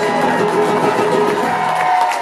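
Acoustic guitar strummed hard through the closing chords of a live song, with the audience beginning to cheer.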